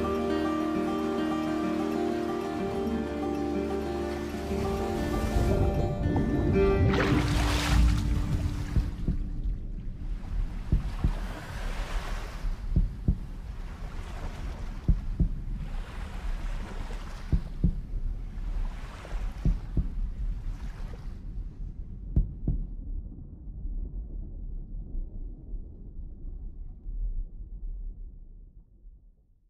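Film-trailer soundtrack: held music chords, then a loud rushing swell about seven seconds in. A run of shorter rushing swells follows, roughly every two seconds, over a low rumble that fades out at the end.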